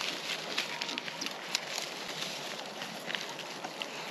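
Idaho Pasture pigs chewing and rooting through a pile of dry corn husks and cobs: irregular crackling and crunching over a steady background hiss.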